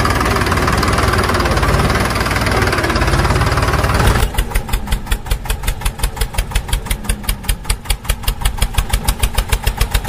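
Small mini tractor engines running. For the first four seconds they come through as a steady dense noise, then an abrupt change to a single small engine close by, putt-putting fast and evenly.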